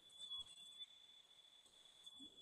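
Near silence: room tone with a faint steady high-pitched whine.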